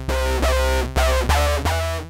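Ableton Drift software synthesizer playing a quick run of about five bass-heavy notes, its tone shifting within each note as an envelope follower modulates oscillator one's wave shape.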